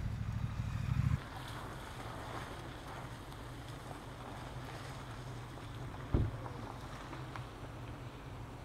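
Wind buffeting the microphone, heavy for about the first second, then dropping to a lighter, steady rumble of wind. One short thump about six seconds in.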